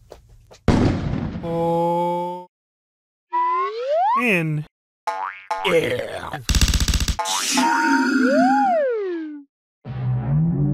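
Cartoon sound effects and character vocalisations: a sudden noise burst about a second in that dies away, then held tones, several rising-and-falling pitch glides, and a short rapid rattle around the seventh second.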